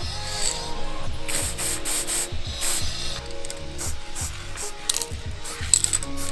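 Molotow metallic gold aerosol spray-paint can giving a quick series of short, sharp hissing spurts and rattles, several a second, in two clusters. Background music plays throughout.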